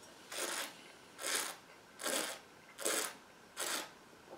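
A taster drawing air through a mouthful of red wine to aerate it: five short, airy slurps, evenly spaced a little under a second apart.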